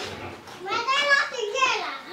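A young child's high-pitched voice: one short utterance of about a second near the middle, with the pitch bending up and down.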